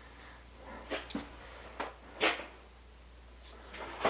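A few faint, scattered knocks and clicks, the loudest a little past two seconds in, over a low steady hum.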